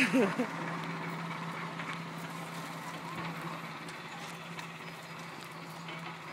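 A short laugh at the start, then a steady low hum with faint scuffing of footsteps and a wheelbarrow rolling over soft dirt.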